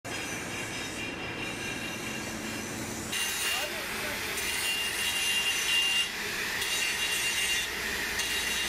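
Workshop noise for about three seconds, then an angle grinder cutting a metal pipe: a steady high whine over a hissing grind.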